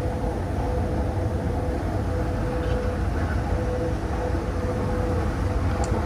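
Escalator running, a steady low mechanical rumble with a faint hum that comes and goes.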